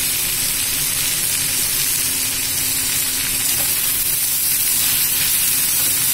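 Sliced bitter gourd and onions sizzling steadily in hot mustard oil in a pan.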